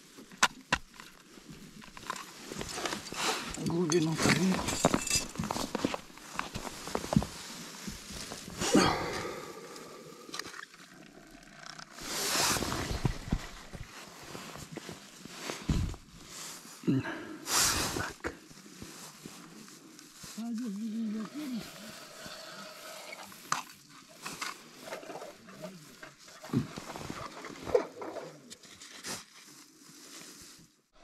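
Handling noise as an ice-fishing tip-up is baited and set on the ice: scattered clicks, knocks and rustling, with two short louder rustles near the middle. Faint voices murmur now and then.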